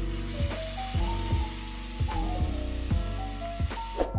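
Sliced cabbage and onion sizzling with soy sauce in a frying pan, stopping suddenly at the end, under background music with a steady beat.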